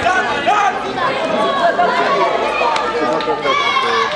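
Many children's voices chattering and calling out at once, several overlapping high-pitched shouts.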